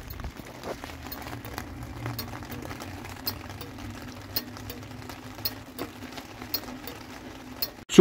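The 1975 Vauxhall Viva HC's original indicator flasher unit ticking steadily and evenly as the indicators flash. This is the audible tick that the new replacement unit did not make.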